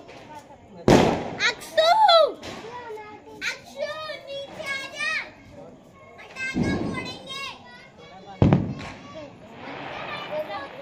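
Children's high voices shouting and chattering, broken by sharp bangs: a loud one about a second in, a softer one past the middle, and another loud one near the end.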